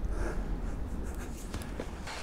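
Faint scratchy rustling of hands handling a freshly killed hare's body on sand, over a low steady rumble.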